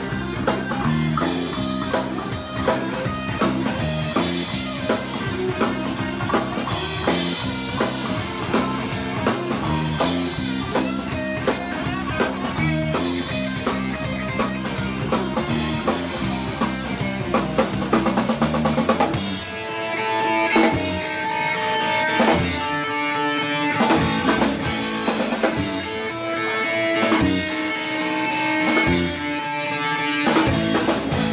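Rock band playing live: electric guitar, bass guitar and drum kit in a driving groove. About two-thirds of the way through it turns sparser and stop-start, with the bass and cymbals cutting out in short gaps between hits.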